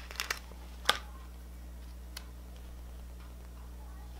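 Small clicks and ticks of paper sticker handling: a sticker peeled off its sheet and pressed onto a planner page, with one sharp tick about a second in, over a steady low hum.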